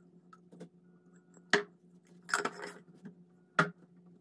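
Glass jar and its lid handled and set down on a hard surface: a few sharp knocks and clinks about a second apart, with a longer scraping clatter about halfway through.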